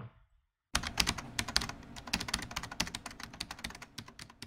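Keyboard typing sound effect: a fast, steady run of clicking keystrokes starting under a second in, accompanying text being typed out on screen.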